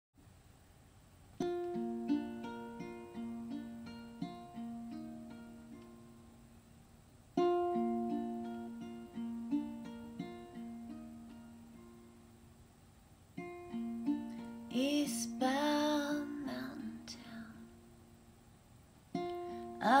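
Plucked string instrument playing a slow intro in three phrases, each starting with a struck chord and ringing out over about six seconds. A woman's wordless vocal glides over it about fifteen seconds in, and she starts singing right at the end.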